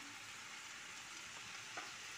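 Chicken pieces, bell pepper and onion sizzling in a frying pan: a soft, even hiss that holds steady, with one faint click near the end.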